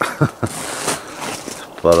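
A man's short, breathy laugh.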